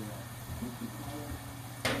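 French fries deep-frying in hot oil in an enamelled cast iron Dutch oven, a steady bubbling hiss over a low hum. A sharp knock breaks in near the end.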